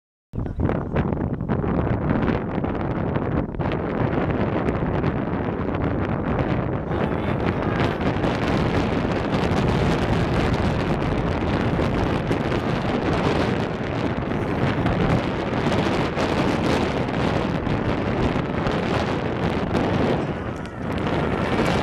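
Wind buffeting an outdoor microphone: a steady, loud, rough rush of noise, strongest in the low rumble. It starts abruptly just after the beginning.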